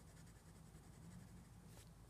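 Faint scratching of a colored pencil shading with firm pressure on a kraft-paper sketchbook page, over a low room hum.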